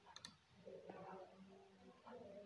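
Faint computer mouse clicks, a quick pair a fraction of a second in, over near-silent room tone.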